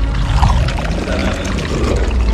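Wet, liquid-sounding film sound effect of the black symbiote goo spreading over a man's arm and body, over a deep steady rumble.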